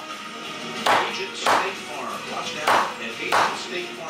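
Meat cleaver chopping cooked chicken on a wooden cutting board: four sharp chops, unevenly spaced, over a quieter background of music and voices.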